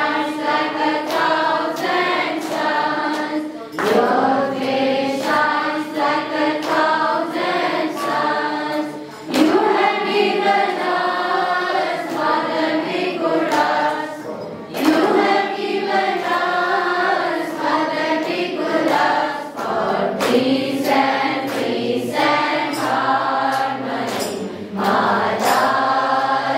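A group of voices singing a devotional bhajan together, in phrases of about five seconds each, with sharp beats keeping time throughout.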